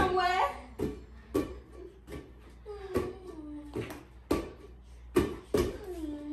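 Children's voices with a string of sharp slaps, roughly one a second: a rubber playground ball smacked against hands as it is batted and caught back and forth.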